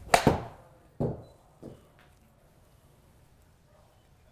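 A 58-degree wedge striking a golf ball off a hitting mat, a sharp crack with a second knock right after it as the ball hits the simulator screen. A softer thud follows about a second in, and a faint knock a little later.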